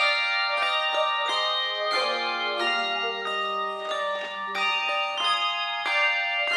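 A handbell choir playing: tuned handbells struck in chords and melody notes, each note ringing on and overlapping the next.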